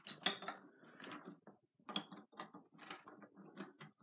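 Wooden Lincoln Logs toy pieces being handled and fitted together on a wooden tabletop: a faint, irregular run of light clicks and knocks.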